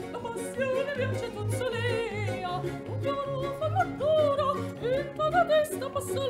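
A soprano singing a Neapolitan song with wide vibrato, accompanied by a small Baroque ensemble of mandolins, violins and harpsichord, with a steady low plucked beat about twice a second.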